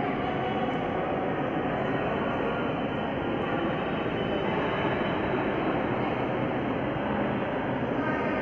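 Steady, even background rumble of a large hall's ambience, with no distinct events.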